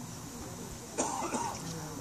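A person's cough about a second in.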